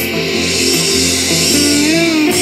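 Live band music with electric guitars and drums playing a slow, emotional song, with a note sliding up and held near the end.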